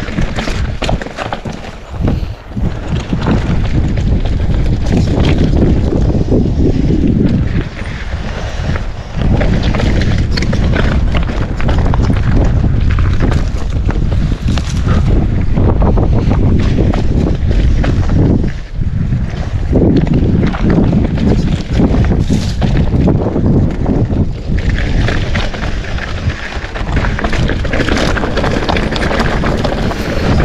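Wind buffeting the camera microphone while a mountain bike rolls down rocky, dirt singletrack, with a steady rush and a constant clatter of small knocks and rattles from the bike over rough ground. The noise eases off briefly a few times.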